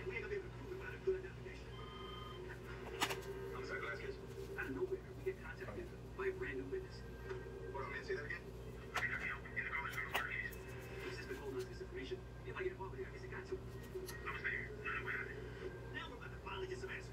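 Faint, indistinct voices in the background over a steady low hum, with a few sharp clicks about three seconds in and again around nine and ten seconds.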